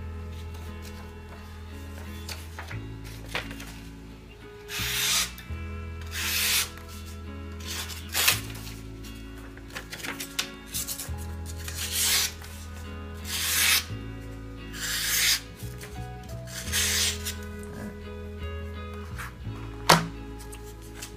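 A long Japanese kitchen slicing knife cutting through sheets of paper: about eight separate rasping slices, spaced a second or two apart, in a sharpness test where the blade cuts cleanly and evenly.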